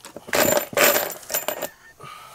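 Small metal hardware jingling and clinking in a plastic bin as it is rummaged through by hand, in three short bursts.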